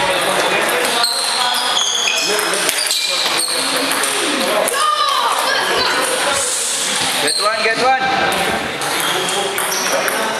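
Table tennis balls clicking sharply now and then on a table and the hard floor, with people talking in the background.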